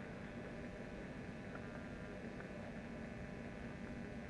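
Steady low hiss and hum of room tone through the lecture-hall microphone system, with a couple of faint ticks partway through.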